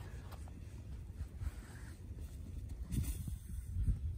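Soft crunching of wet snow being packed by hand into a snowman mound, a little busier near the end, over a low rumble on the microphone.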